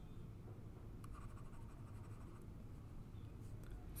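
Faint scratching of a stylus moving over a pen tablet, strongest for a second or so in the middle, over a low steady room hum.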